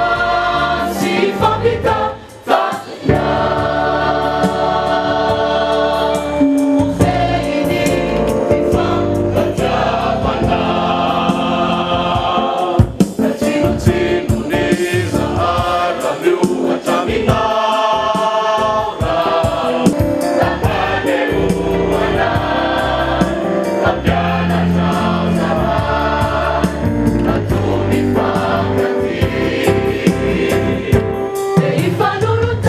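Church choir of women and men singing together, loud and sustained, with a brief break about two to three seconds in.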